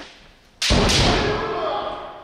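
A loud, drawn-out kiai shout from a budo practitioner in guard, starting suddenly about half a second in and lasting over a second. A sharp thud sounds at its start, likely a foot stamp on the wooden floor.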